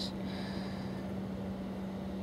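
A steady low hum over a background hiss, like a machine or appliance running continuously.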